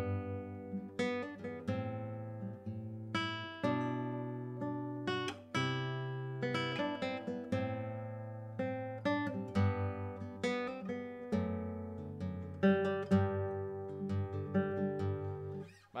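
Nylon-string classical guitar playing a slow phrase in G major, each melody note plucked together with a lower note a tenth beneath it, so the two voices move in parallel tenths.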